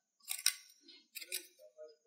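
Thin plastic of a cut-open bottle crinkling and clicking as it is handled, in two short crackly bursts about a second apart with faint rustles between: the bottle's cut petals being twisted to one side.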